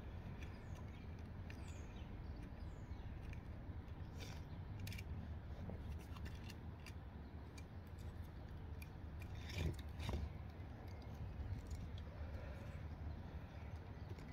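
Thin wire being wound around a split log, with faint scrapes and a few small clicks as it is pulled against the wood, over a steady low background rumble.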